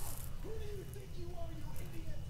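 Quiet room tone with a low hum and faint, distant voices.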